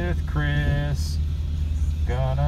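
A man singing long held notes inside the car, over the steady low rumble of the Pontiac G8's idling engine.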